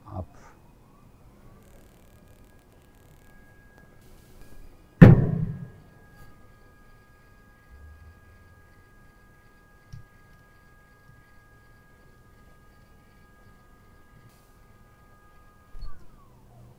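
CBR load frame's electric drive motor spinning up with a rising whine about a second in, then running with a faint steady whine as it raises the mould toward the penetration piston at seating speed, and winding down with a falling tone at the very end. About five seconds in, a single loud thump.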